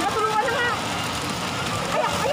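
Voices talking over a steady rushing background noise.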